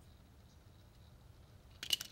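Faint background, then about two seconds in a single short, sharp metallic click from the brass fittings of a backflow preventer and its test kit as a test cock is worked.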